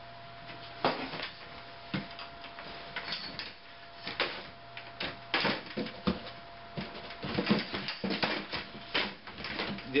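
Irregular clatter and knocks of metal-framed folding beach chairs being slid into and settled against the metal frame of a beach cart.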